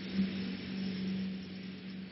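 Steady hiss with a low, steady hum underneath: the background noise of the lecture recording itself.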